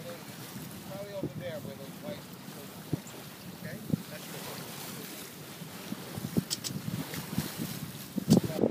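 Wind buffeting the microphone and water rushing past the hull of a sailboat under way. Faint voices in the first couple of seconds and a few brief knocks from the boat.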